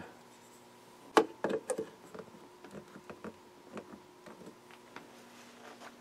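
Small clicks and taps of a glass vacuum tube, a globe-style Type 30 triode, being handled and seated in a tube tester socket, with one sharper click about a second in and a few more soon after. Under it runs a faint steady hum.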